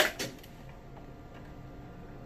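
Two sharp clicks in quick succession right at the start, then a faint steady hum of room tone.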